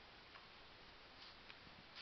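Near silence, with a few faint, irregular ticks.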